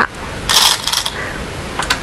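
Go stones clattering and clicking on a wooden Go board as moves are laid out: a short rattle about half a second in, then two sharp clicks near the end.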